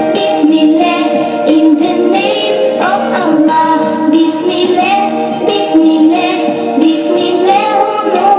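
A children's song: a child's voice singing over a musical backing track, played for a dance.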